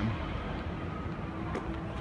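Steady city street background noise: a low hum of traffic with no single vehicle standing out, and a faint steady tone entering near the end.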